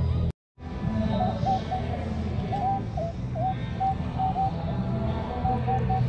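Minelab Equinox 800 metal detector giving a run of short, mid-pitched beeps, some with a slight bend in pitch, as its coil sweeps over a target in shallow water. The beeps signal a target that reads 30 on the display. A steady low rumble runs underneath, and the sound cuts out briefly near the start.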